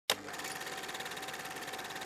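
A click, then a faint, steady mechanical whir with a thin steady hum and a fast, even flutter.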